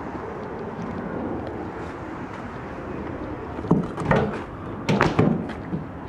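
Pickup truck tailgate being unlatched and let down, heard as a few metallic clunks about four and five seconds in.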